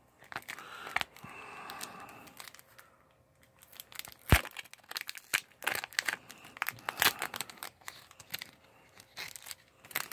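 Thin clear plastic bags on sticker packs being handled and torn open: crinkling and crackling plastic, with one sharp snap about four seconds in.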